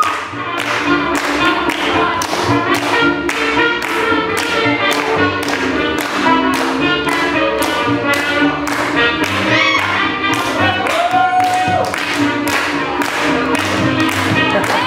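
Swing jazz music playing for dancing, with a steady beat of about two strokes a second under the melody.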